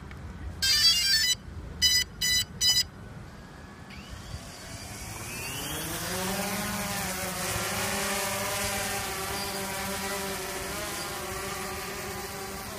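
DJI Phantom 2 Vision quadcopter powering up: a short chime followed by three quick beeps. A couple of seconds later its four motors spin up with a rising whine and settle into a steady propeller buzz as it lifts off and hovers.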